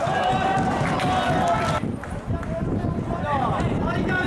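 Indistinct voices of people talking and calling over a low outdoor rumble. The sound changes abruptly just under two seconds in, where one piece of recording is spliced to the next, and more calling follows.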